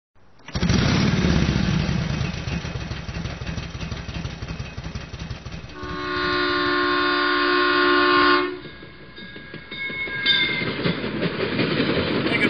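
A train running past with a rhythmic rumble, and its multi-note horn sounding for about two and a half seconds from about six seconds in.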